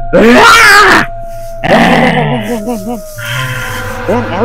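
A man groaning and growling in two loud outbursts, the first lasting about a second and the second starting about a second and a half in, then trailing off into quieter wavering moans, as if possessed. A single held background tone runs underneath and drops slightly in pitch near the end.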